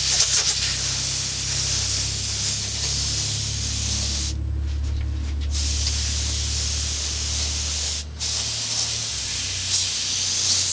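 Airbrush spraying colour onto fondant, a steady hiss of air and paint that stops for about a second around four seconds in and again briefly just after eight seconds as the trigger is let off. A steady low hum runs underneath.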